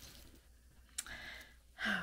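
A single light click of jewelry pieces knocking together as a hand picks through the pile, about halfway through, followed by a short breath out.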